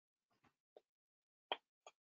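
Near silence with a few faint, brief clicks, the loudest about one and a half seconds in.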